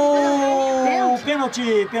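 A football commentator's long, drawn-out shout of "gol!", held on one note that sinks slowly in pitch and breaks off about a second in, followed by shorter excited shouts.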